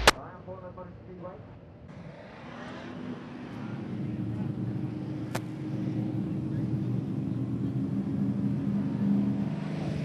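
A pack of classic-car dirt-track race cars running their engines at pace-lap speed, a steady combined engine drone that grows louder from about two seconds in as the field comes closer.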